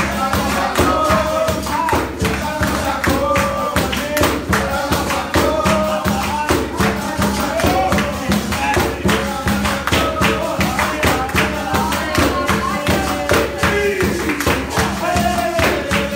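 Capoeira roda music: pandeiro and percussion keeping a steady driving beat under singing.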